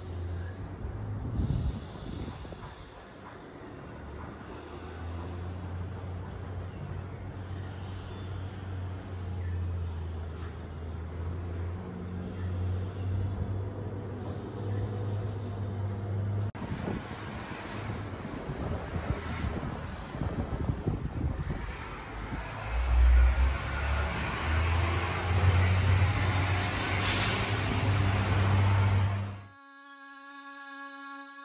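A steady low rumble like a running engine, with background noise building in the second half and a sharp hiss about 27 seconds in. The sound cuts off suddenly just before the end.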